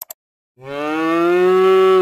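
Two quick clicks, then a recorded cow mooing: one long moo that starts about half a second in, its pitch rising slightly as it swells louder.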